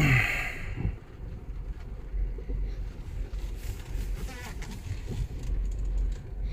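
Mazda 6 idling in reverse, heard from inside the cabin as a steady low rumble, with a brief hiss in the first half-second.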